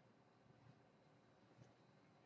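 Near silence: faint room tone, with two very faint ticks.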